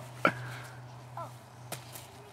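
Two sharp knocks about a second and a half apart, the first the louder: a stick striking a hanging papier-mâché piñata.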